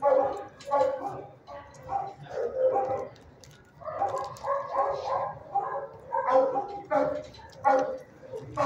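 Dogs barking in a shelter kennel, a dozen or so short, sharp barks coming one after another throughout.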